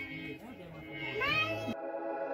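A high voice with a pitch that bends and glides upward, then background music starts abruptly near the end.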